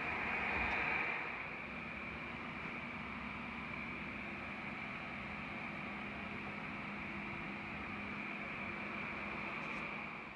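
Steady hiss with a faint low hum, like a fan running, slightly louder in the first second and then even.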